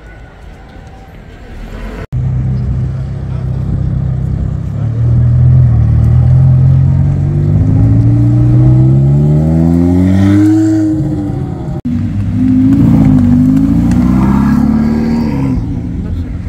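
Ferrari F430 V8 pulling away under acceleration, its engine note climbing steadily in pitch for several seconds. After a cut, another sports car engine revs in quick rises and falls.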